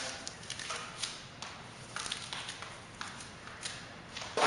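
A large paint brush loaded with thinned water-based paint, its bristles flicked back repeatedly by hand to spatter paint at a wall: an irregular run of soft, quick clicks and ticks.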